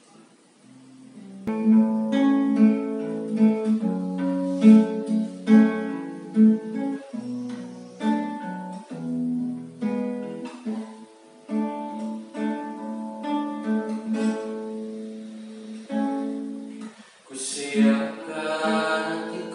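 Acoustic guitar playing a slow song introduction, picked notes and chords starting about a second and a half in. A man's voice begins singing near the end.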